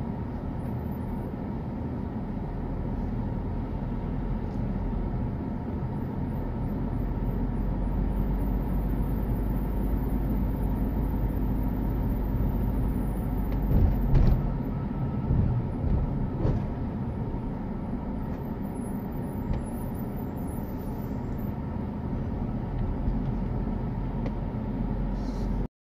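Car driving, heard from inside the cabin: steady engine and tyre rumble, with a few short thumps about halfway through.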